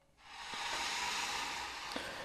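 A steady hiss, like a recording's background noise, setting in a moment after a brief silence, with a faint click near the end.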